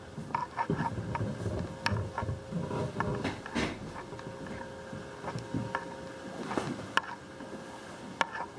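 Scattered clicks, knocks and rustles of a handheld camera and footsteps moving through a small room, over a faint steady hum from laboratory equipment.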